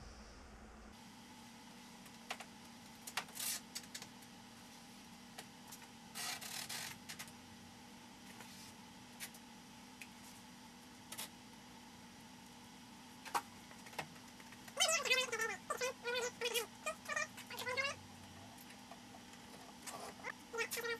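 A cat meowing, a run of several short calls that bend up and down in pitch late on. Earlier come a few brief rasping or rustling noises.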